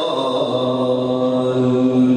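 Male qari reciting the Quran in melodic tajwid style, drawing out one long, low held note after a short falling glide.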